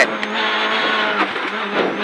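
Renault Clio Super 1600 rally car's four-cylinder engine running hard under load, heard from inside the cabin, its note shifting a little past halfway.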